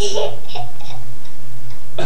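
Steady low electrical hum under a brief burst of noise from a toddler at the start, followed by a few faint ticks.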